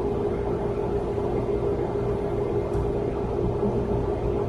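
Steady room tone: a low hum and rumble with a faint steady tone, and no distinct events.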